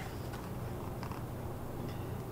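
Room tone in a pause between spoken lines: a steady low hum with faint background noise.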